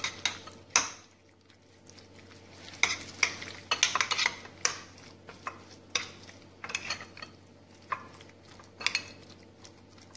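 Spoon stirring a wet mix of grated vegetables and mayonnaise in a glass bowl: irregular clinks and scrapes of the spoon against the glass, with a short lull about a second in.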